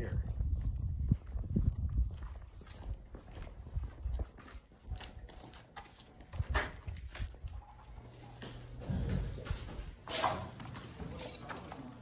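Footsteps on a concrete walkway, then a metal-framed glass entry door being pulled open about halfway through, with more steps as the walker goes in.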